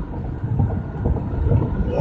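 Road and engine noise inside a moving car's cabin: a steady low rumble.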